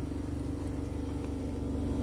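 Steady low background hum with a faint steady tone under it: the room tone of the store.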